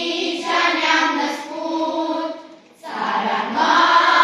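Children's choir singing together in a sustained melody, with a short breath pause between phrases about two-thirds of the way through before the singing comes back louder.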